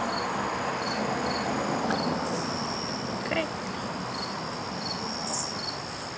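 Steady hiss with a faint, high-pitched chirp repeating evenly about every three-quarters of a second.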